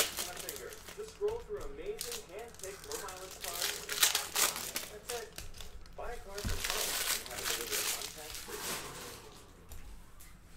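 Foil trading-card pack wrapper crinkling and crackling as it is torn open and handled, loudest about four seconds in, with cards handled and stacked near the end.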